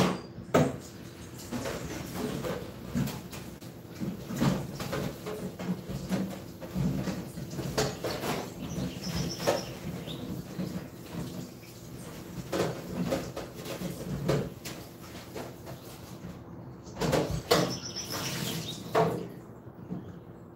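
Okras being washed by hand in a stainless steel kitchen sink: irregular knocks, rattles and splashes throughout, with a louder run of knocks near the end.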